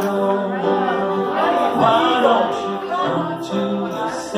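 Live singing with grand piano accompaniment: a slow vocal line with long held notes over the piano.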